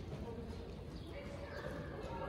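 Hoofbeats of a ridden horse trotting on sand arena footing.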